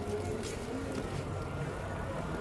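Outdoor ambience with a steady low engine hum, as from a motor vehicle running somewhere off to the side.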